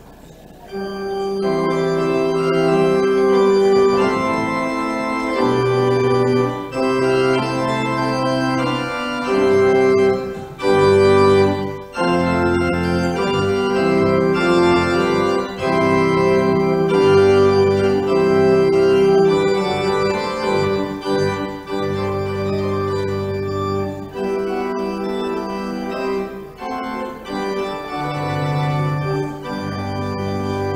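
Church organ playing the prelude, beginning about a second in: held chords with a melody on top and low bass notes that change every second or two.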